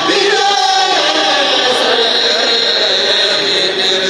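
A kurel, a group of men, chanting Mouride religious verses (khassaides) together without instruments, sung into microphones. The singing is sustained, with no pauses.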